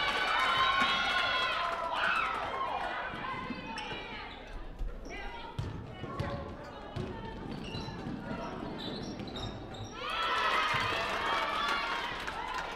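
Girls' basketball game on a hardwood gym floor: a ball bouncing in scattered thuds, with high, bending squeaks of sneakers and players' voices near the start and again about ten seconds in, in a large echoing hall.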